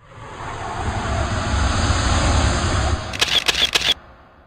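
A swelling rush of noise with a low rumble, then about five rapid camera shutter clicks that cut off abruptly, like an intro sound effect.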